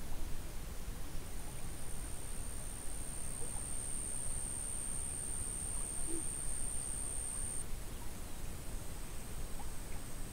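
Outdoor ambience: a steady low rumble with a thin, high-pitched steady whine that grows louder about a second in and drops back a couple of seconds before the end.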